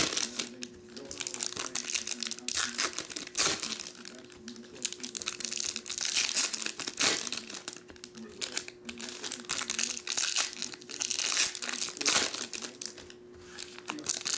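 Foil wrappers of Topps Chrome trading-card packs crinkling and tearing as the packs are ripped open and handled, an irregular, crackly rustle that comes and goes.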